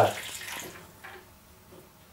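Water running from a gas boiler's pressure-relief drain valve into a small ladle as the boiler circuit's pressure is let off; faint, fading over the first second and a half.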